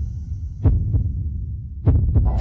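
Intro sound effect of deep, heartbeat-like thumps over a steady low rumble: two thumps close together about two-thirds of a second in, and another near the end.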